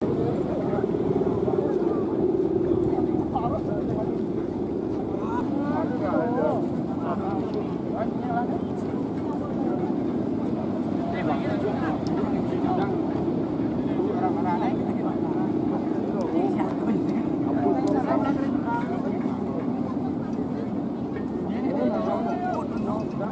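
Steady droning hum of a large Balinese kite's guangan, the bowed hummer strung above its top spar, its pitch wavering slowly as the wind changes.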